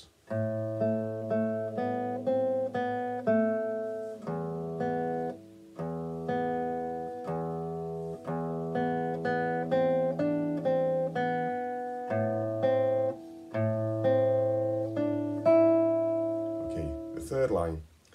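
Classical nylon-string guitar played fingerstyle at a slow, even pace: a simple melody of single plucked notes over sustained open bass notes, with a few short rests between phrases.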